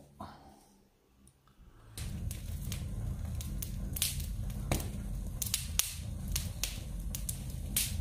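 Freshly lit log fire crackling, with sharp irregular pops over a steady low rumble of the flames, starting about two seconds in.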